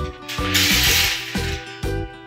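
Light background music with steady tones, and about half a second in a brief rattling rub of plastic beads on a string being handled and pulled straight along a wooden table.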